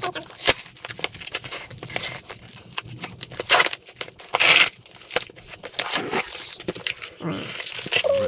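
Paper mailing envelope being torn open by hand, with paper rustling and crinkling as the parcel inside is pulled out and handled. The longest rips come about three and a half and four and a half seconds in.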